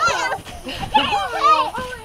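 Young children's high-pitched squeals and shouts while playing, one burst right at the start and a longer, wavering one about a second in.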